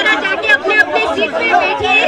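A woman's voice through a stage microphone and PA, in short phrases with wavering pitch.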